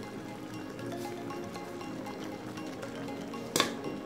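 Background music with steady repeating notes, and one sharp clink near the end.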